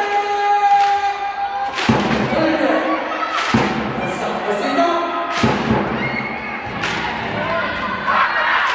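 Indoor volleyball arena sound: a held note from the music or PA at first, then four heavy, echoing thumps spaced about every one and a half to two seconds, over crowd noise and voices.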